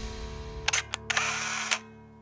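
Camera shutter sound effects over a held music chord: two quick clicks, then a longer whirring burst that ends in a click, as the theme music fades out.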